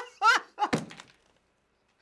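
A man laughing hard, then a single thump of his body or hand against the desk, about three quarters of a second in, as he doubles over.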